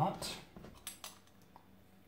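A metal spoon in a plastic tub of brass cartridge cases soaking in cleaning solution: a brief wet swish, then a few faint light clicks as the spoon knocks against the tub and the cases.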